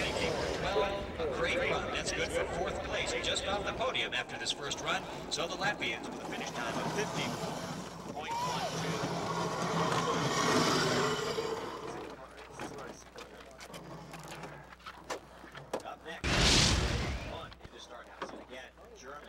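Voices and crowd noise around a four-man bobsled finishing its run on the ice track. Near the end a bobsled rushes past with a brief, loud whoosh of runners on ice.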